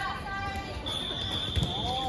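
A referee's whistle blown in one long, steady high blast starting about a second in, with a dodgeball thudding on the hard court about halfway through.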